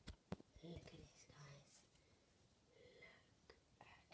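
Faint whispered speech, with two sharp clicks right at the start.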